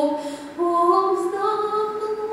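A woman singing a Russian folk song solo and unaccompanied. A held note ends, there is a short breath, and about half a second in a new phrase begins, climbing in steps.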